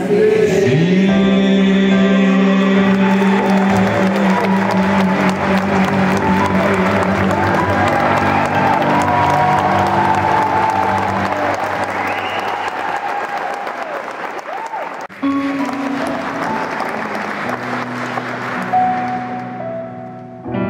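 A male singer holds the long final note of a song over a backing track, and the audience breaks into applause while the music plays out. About fifteen seconds in, the sound cuts to a soft instrumental intro of the next song.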